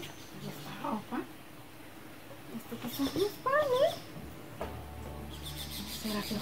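A cat meowing: two short rising mews about a second in, then a longer wavering meow about three and a half seconds in.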